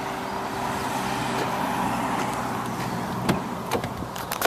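A car engine running steadily with a low hum that swells a little in the middle. Two sharp clicks come late on, as the car's driver's door is unlatched and swung open.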